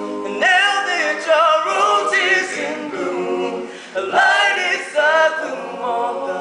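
Men's a cappella octet singing: a lead voice sings gliding runs that rise and fall, starting new phrases about half a second and four seconds in, over chords held by the other voices.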